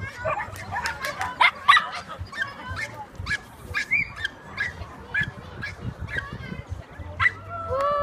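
A dog barking repeatedly in short, sharp barks, a few a second, with a drawn-out falling cry near the end.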